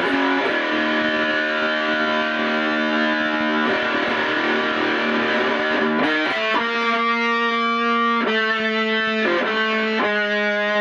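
Flying V electric guitar played with heavy distortion: fast, dense chord playing, then from about six seconds in, held chords left to ring, changing a few times.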